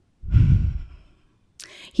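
A woman's heavy sigh close to the microphone, followed by a short intake of breath near the end as she starts to speak again.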